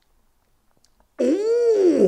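A man's drawn-out "ooh" of appreciation on tasting gin, starting about a second in, its pitch rising and then falling.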